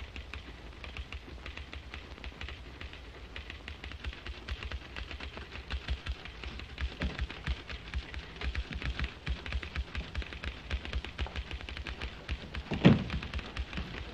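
Rapid, irregular clicking and tapping, growing somewhat louder after the middle, with one heavier knock near the end.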